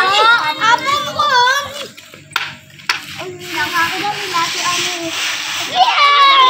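A group of children talking and chattering over one another. About two seconds in it dips quieter, with two short clicks.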